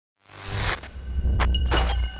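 Cinematic intro sound design for a glitch title animation: a deep bass rumble under a rising rush of noise, then a few short, sharp glitch hits in the second half.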